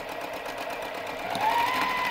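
Electric sewing machine stitching through layered cotton quilt pieces, running steadily with rapid needle strokes. Its motor whine rises in pitch about one and a half seconds in as it speeds up.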